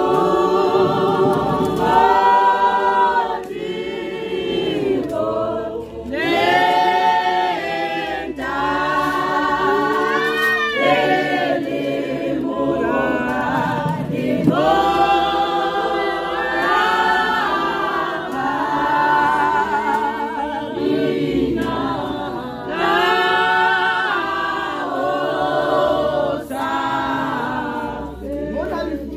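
Church congregation singing together, many voices in one song, in phrases with short breaks between them.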